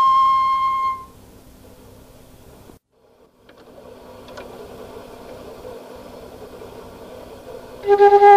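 Solo flute holding a high note that ends about a second in, followed by several seconds of faint room hiss with a brief dropout to silence. The flute comes back in with a new phrase near the end.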